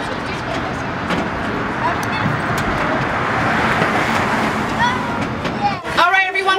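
Steady street and vehicle engine noise mixed with the indistinct chatter of many children's voices, with no single voice standing out.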